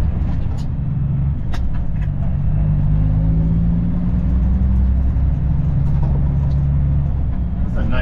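Semi tractor's diesel engine running under way with no trailer, a steady low drone over road noise. The engine note rises slightly about two seconds in and eases back down near the end.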